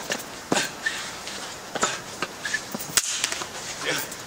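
Boots scuffing and slapping on concrete paving during jit dance footwork: a few sharp, irregular hits, the loudest about half a second in and near the three-second mark.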